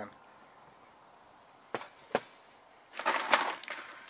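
Two short clacks a little before halfway, then about a second of crinkling plastic wrapping near the end as a bagged Magpul PMAG magazine is handled.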